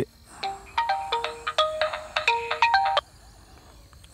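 Mobile phone ringtone: a short electronic tune of quick notes jumping between pitches, starting about half a second in and cutting off suddenly about three seconds in.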